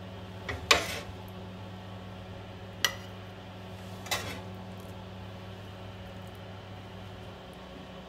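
Metal tongs knocking and clinking against a metal grill tray and a ceramic plate while grilled chicken breasts are moved across: three sharp knocks in the first half, the first the loudest. Under them runs a steady low hum that cuts off shortly before the end.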